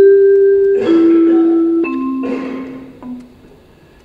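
Electronic voting-system chime: a slow, descending run of sustained marimba-like notes, loud, fading out about three and a half seconds in, sounding while the votes are cast.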